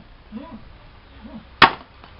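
A single chop of a curved machete blade into a dry wooden stick, a sharp strike about one and a half seconds in.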